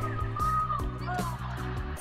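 Background music with sustained notes that shift in pitch in steps.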